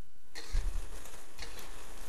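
Metal spatula scraping and knocking against a wok as cabbage is stir-fried to mix in the ketchup and sugar, starting about a third of a second in, with two sharper scrapes.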